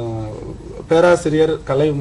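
Only speech: a man talking. He holds one long, slowly falling vowel for about the first second, then goes on in short syllables.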